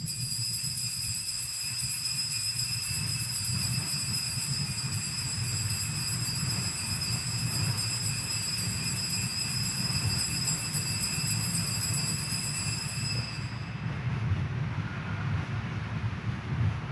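Altar bells ringing without a break at the elevation of the consecrated host, marking the consecration. The ringing is high-pitched and steady over a low hum, and it stops about thirteen seconds in.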